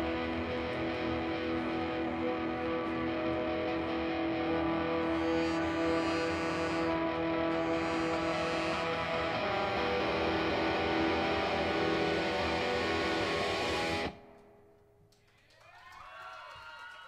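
Live ska-rock band of distorted electric guitars, bass, drums and a horn section of trumpet, trombone and saxophone holding a long chord that ends the song, cutting off suddenly about fourteen seconds in.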